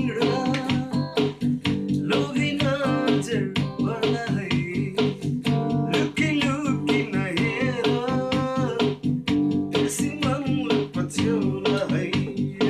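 Electric guitar, a Fender Stratocaster, playing an improvised lead solo with bent, wavering notes over a backing track with a steady drum beat and bass.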